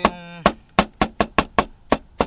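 Kitchen knife chopping tomatoes on a wooden cutting board: a quick, slightly uneven run of about seven sharp taps of the blade hitting the board, roughly four or five a second.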